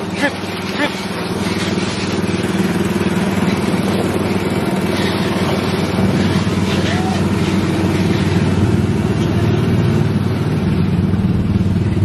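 Small engine of a guide-railed ride car running steadily under way, heard from the driver's seat, with a low, even hum.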